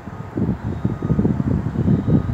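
Wind buffeting the phone's microphone: an uneven low rumble in gusts that picks up about half a second in.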